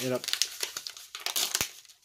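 Packaging crinkling as it is handled, a quick run of crackles with one sharper click about one and a half seconds in.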